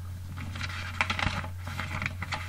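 A quick, irregular run of small hard clicks and taps, densest about a second in, over a steady low electrical hum.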